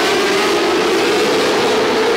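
Engines of a pack of small open-wheel midget race cars running together under power on the green-flag restart: a loud, steady drone.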